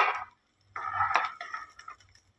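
Roasted peanuts rattling as a steel ladle scoops them from a non-stick kadhai and tips them into a glass bowl. There is a short burst right at the start, then about a second of scraping and clinking in the second half.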